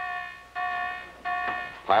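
Warship's general quarters alarm sounding: a repeated bell-like tone, about three strokes roughly 0.7 s apart, each fading away before the next. It is the call to battle stations.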